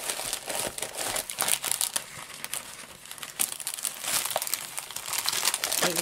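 Clear plastic cover film on a rolled diamond painting canvas crinkling as the canvas is handled and unrolled. It makes a run of small crackles that thins out around the middle and picks up again.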